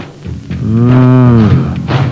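A single long, low moo, about a second long, its pitch rising and then falling.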